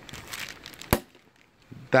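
Light handling rustle, then a single sharp plastic click as the retaining clip on a Mercedes-Benz radiator's transmission cooler hose fitting is pushed into place.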